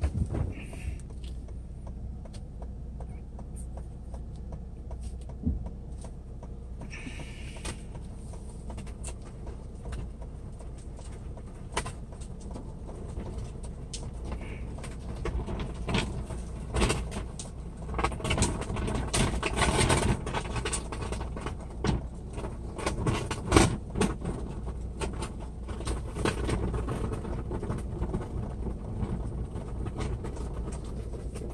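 Steady low hum of an SUV's engine heard from inside its rear cargo area, with scattered knocks and rattles that come thicker and louder through the middle stretch.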